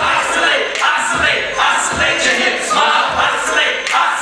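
Live hip-hop performance through a club PA: several rappers delivering lyrics into microphones over a beat, with a kick drum landing about twice a second.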